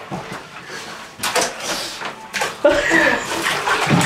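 Water sloshing in a bathtub of ice water as a person steps in and sits down, with a brief burst of sound a little over a second in and a short voice about three seconds in.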